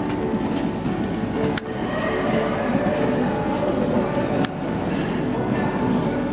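Steady, loud rumbling noise of an indoor riding hall with faint steady tones through it, broken by two sharp clicks, about a second and a half in and again near four and a half seconds.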